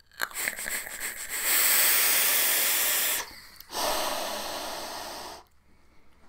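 A long, hard draw on a pod vape, with crackling clicks at the start, then after a short pause a loud, forceful exhale that trails off. The hit is a dry one: the freshly refilled wick had not soaked.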